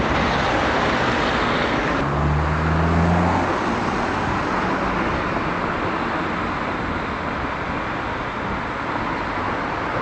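Steady outdoor background noise, like distant road traffic, with a low hum that comes in about two seconds in and fades after a second and a half.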